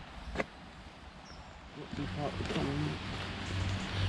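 Quiet outdoor background with a single sharp click about half a second in, then a man's voice talking quietly from about two seconds in.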